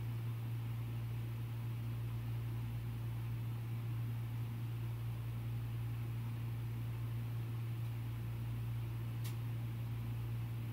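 A steady low hum with faint hiss under it, the background noise of the room or recording in a pause of speech. One faint short tick comes near the end.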